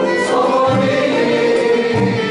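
Arab-Andalusian malouf music in the hsine mode: a group of voices singing together over the ensemble's instruments.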